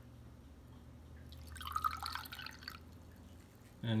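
Distilled water dripping and trickling from a plastic squeeze bottle into a glass beaker, for about a second and a half in the middle, over a faint steady low hum.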